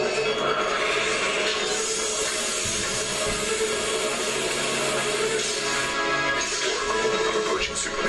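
Film soundtrack playing: a steady, dense music score with sound effects.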